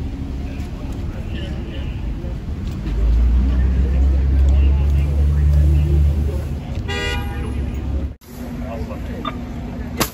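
City street traffic noise with a loud low rumble for about three seconds, then a short car horn toot about seven seconds in.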